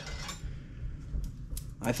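A few faint, light metallic clinks as a thin strip is picked up and handled.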